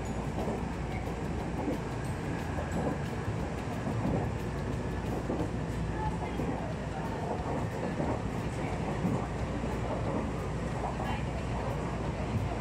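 Tobu Tojo Line commuter train running at speed, heard from inside the carriage: a steady rumble of wheels and running gear as the train picks up speed from about 65 to 85 km/h.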